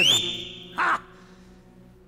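A high whistle glides up and holds for about half a second as a man's speech breaks off. A short hiss follows, then a faint steady drone.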